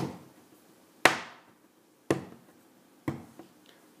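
A lump of clay being tapped down on a wooden tabletop to flatten its sides into a cube: four knocks, about one a second.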